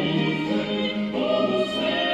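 Mixed-voice vocal ensemble, men and women, singing in parts: held chords of several voices together, moving to a new chord about a second in.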